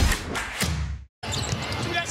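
Intro theme music fading out, cut off by a moment of silence about a second in. Then basketball game sound from the arena takes over: crowd noise with ball bounces and court sounds.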